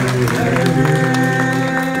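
Two acoustic guitars strummed in a quick, even rhythm under held sung notes, in a live stage performance.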